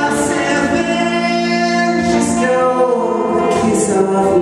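A live song: a man singing long, held notes over his own electric guitar.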